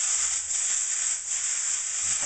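Shrimp fried rice sizzling steadily in a hot oiled wok on an electric coil burner, the rice browning and beginning to stick to the pan.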